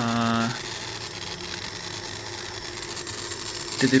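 A man's voice holding a hesitation sound, 'uhh', for about half a second, then a steady background hiss with a faint hum until speech resumes near the end.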